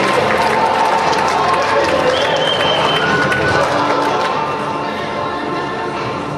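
Audience applause in a hall with music playing underneath, the clapping easing off in the second half.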